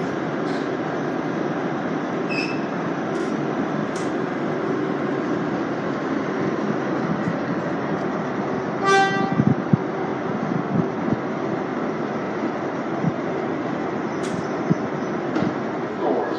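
Steady running noise of an R188 subway car in motion, heard from inside the car. About nine seconds in there is a single short horn toot, followed by a few thumps from the wheels.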